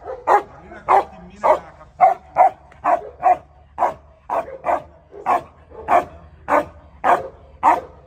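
Dog barking repeatedly in a steady rhythm, about two short, loud barks a second.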